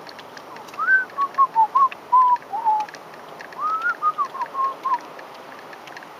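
A person whistling a short tune close to the microphone: two phrases of quick, melodic notes with a pause between them.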